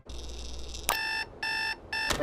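Bedside alarm clock going off: a click about a second in, then three short electronic beeps, roughly two a second, over a low hum.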